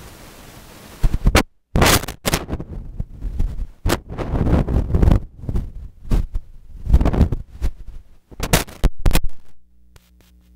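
Steady hiss, then, about a second in, loud, distorted crackling and scraping bursts in an irregular run with brief dropouts, from an overloaded or rubbed microphone. It stops shortly before the end.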